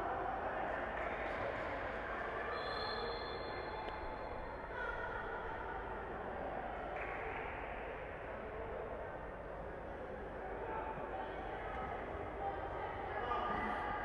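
Steady echoing ambience of an indoor futsal hall during play: faint, distant voices of players and bystanders over a constant hall noise. A thin, high tone sounds for about two seconds a couple of seconds in.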